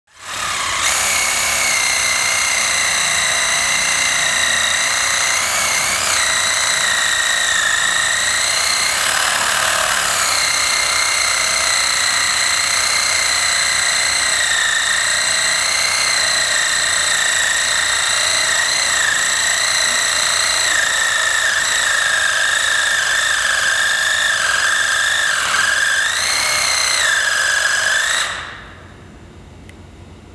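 Cordless reciprocating saw running steadily as its blade cuts into soft sediment, a high whine that wavers slightly in pitch, stopping abruptly near the end.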